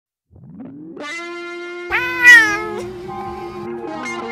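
A domestic cat meows, one loud drawn-out meow falling in pitch about two seconds in, over background music with long held notes.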